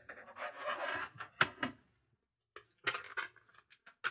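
Rustling handling noise as wires are pushed down into a plastic case, then a cluster of sharp plastic clicks and taps as the black cover is set onto the case.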